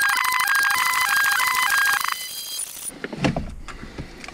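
Electronic alarm tone: a fast-trilling beep melody stepping between a few pitches, which stops about two seconds in. A dull thump follows about a second later.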